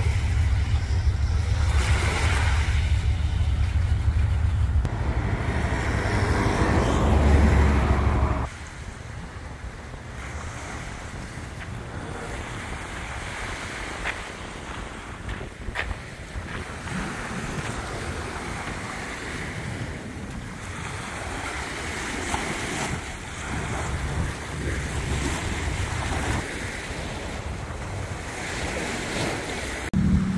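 Wind buffeting the microphone over the wash of the sea, loud for the first eight seconds or so. It then cuts off abruptly to a quieter, steady wash of small waves lapping on a sandy beach.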